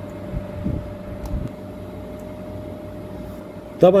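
A steady low background rumble with a faint, steady high whine over it and a few faint clicks. A man's voice starts near the end.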